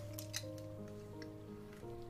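Soft background music of slowly changing held notes, with a few faint small clicks and rustles.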